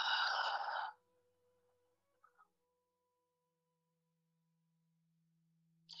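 A woman's audible exhale, about a second long, right at the start, during a child's pose stretch. Then very faint sustained background music tones with near silence.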